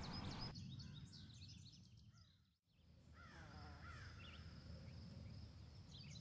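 Faint wild birdsong: small birds chirping in quick, high, repeated notes, with a few lower down-slurred calls in the second half. The sound cuts out briefly just before halfway.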